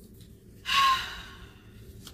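A woman gasps sharply: one loud breath that starts suddenly about two-thirds of a second in, with a brief squeak at its start, and fades over the next second.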